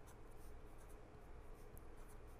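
Faint scratching of a pen writing on paper, in short separate strokes.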